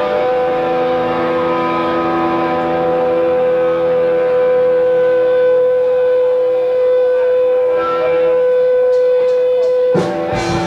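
Electric guitar sustaining a single note as a steady drone on one pitch, with fainter held tones around it, in a live rock recording.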